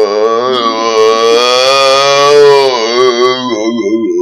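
A man's loud, long drawn-out "oooh", held for about three and a half seconds with a slightly wavering pitch before it fades near the end: an exaggerated comic imitation of how people in a certain town say hello.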